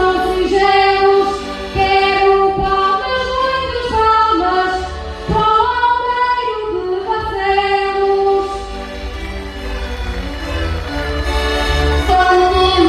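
A woman singing a verse of a desgarrada, a Portuguese improvised sung challenge, into a microphone over amplified instrumental accompaniment. Her held, gliding notes give way to the accompaniment alone for a few seconds near the end.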